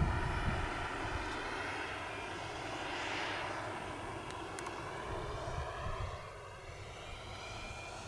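Model turbine jet engine of an HSD T-45 Goshawk in flight on landing approach with its gear down, a steady rushing whine. It swells about three seconds in, then fades as the jet moves away.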